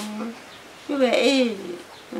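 Elderly woman's voice singing unaccompanied in Mixtec: a held low note fades out, then after a short pause a new sung phrase with gliding pitch begins about a second in.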